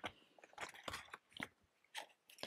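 Paper banknotes being handled and slipped back into a stack of cash envelopes: faint, crisp paper rustles and a few short crinkles.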